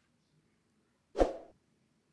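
Near silence, broken once about a second in by a short voice sound lasting under half a second.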